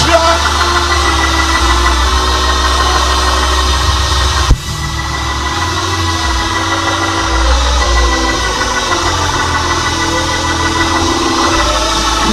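Church band music: sustained keyboard chords held over a deep bass line, with one sharp thump about four and a half seconds in.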